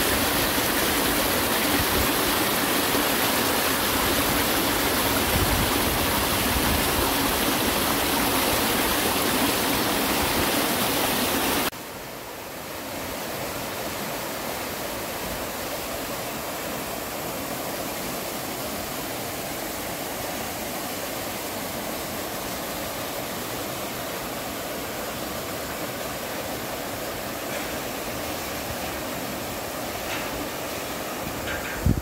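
Mountain stream and small waterfall spilling over granite rocks: a steady, loud rush of water. About twelve seconds in it cuts abruptly to a quieter, even flow of stream water.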